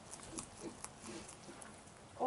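Faint crunching and rustling of a lop-eared rabbit feeding with its nose down in straw, heard as a few soft ticks.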